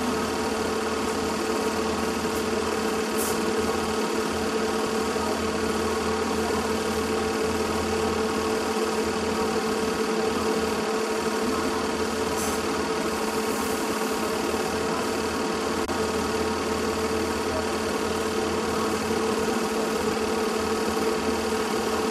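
A machine running with a steady hum and whir, unchanging in pitch and level throughout.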